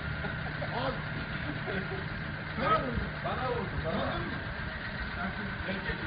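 A vehicle engine idling steadily, with faint voices talking in the background.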